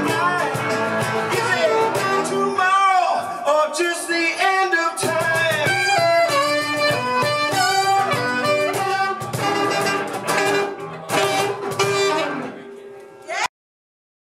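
A live band: a man singing over a strummed acoustic guitar with electric guitar and percussion behind him. The music fades down near the end and then cuts off abruptly into silence.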